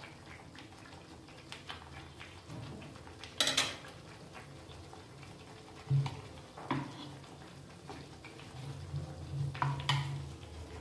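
Banana malpua batter frying in oil in a nonstick pan, with a few clinks and knocks of a utensil against the cookware, the loudest a short scrape-like clatter about a third of the way in.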